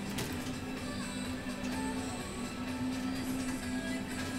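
Background music over a steady low hum from a motorised stair-climber (stepmill) in use.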